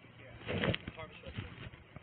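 A man's voice saying "okay", picked up on a body camera's microphone, with a short loud noisy burst ending in a sharp click about half a second in.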